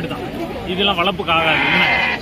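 A goat bleats once in the second half, a bright drawn-out call over men's voices.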